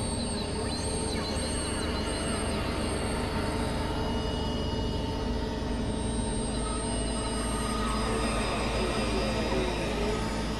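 Experimental drone music from a Novation Supernova II and a Korg microKorg XL synthesizer: many steady held tones stacked over a low rumble. Faint chirping glides run high up in the first few seconds, and wavering glides rise in the middle range near the end.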